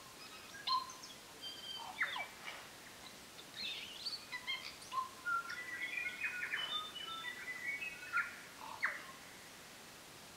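Several birds singing and calling: a busy scatter of short chirps and whistles, some sliding steeply down in pitch, at a moderate level.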